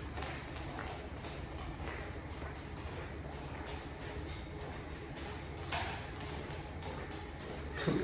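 A poodle's claws clicking and a person's shoes tapping and shuffling on a hard floor as they walk together at heel on a leash: irregular light clicks throughout, over a steady low hum.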